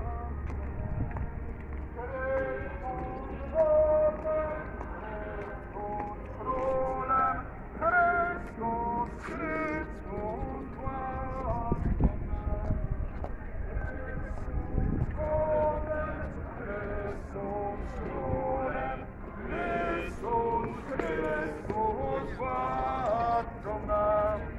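A group of marchers singing a song together as they walk, held notes following one another with short breaks.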